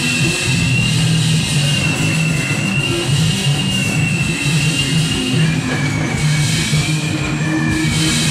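Loud rock music, most likely a live band: a pulsing bass line with a sustained, wavering high tone held over it, which drops slightly in pitch late on.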